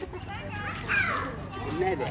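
People talking, with a child's high voice about a second in.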